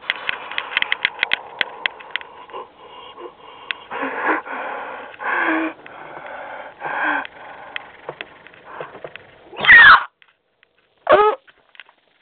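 Cartoon soundtrack playing from a computer's speakers: breathy, wheezing vocal sounds, then two short loud cries with bending pitch near the end.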